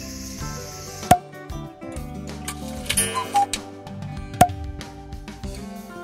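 Background music with sustained notes, cut by two sharp, ringing sound-effect hits, one about a second in and another about four seconds in.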